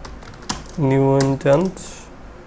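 Typing on a computer keyboard: a few scattered keystroke clicks. A voice speaks a drawn-out word for about a second in the middle, louder than the keys.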